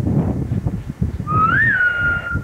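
A single high, whistle-like tone a little over a second long, starting about a second in: it glides up, drops back and holds a steady pitch.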